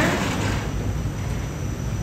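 Steady low mechanical rumble of background noise.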